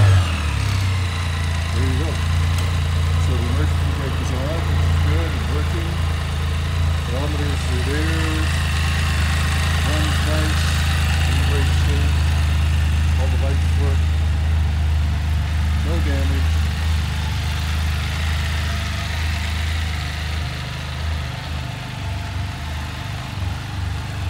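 Can-Am Spyder F3-S's 1,330 cc liquid-cooled Rotax three-cylinder engine idling steadily, just after being started.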